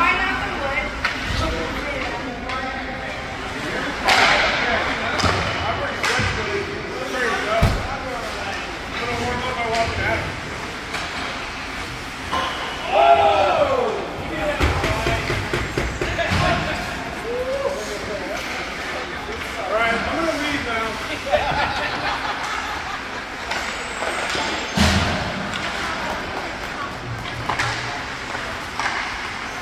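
Ice hockey game: players' voices shouting and calling out on the ice, with a few sharp knocks of puck or sticks against the boards and glass.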